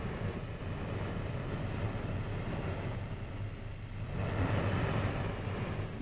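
Steady rushing roar of a gas gusher blowing out of a drilling-rig wellhead, growing louder and hissier about four seconds in.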